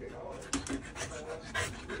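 Golden retriever puppy panting, with a few sharp clicks and knocks about half a second in and again near the end.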